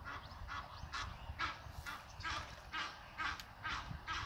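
A bird giving a run of short, repeated calls, about two or three a second.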